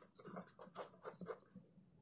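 Faint pen on notebook paper: short scratching strokes, several a second, as a word is handwritten, dying away about a second and a half in.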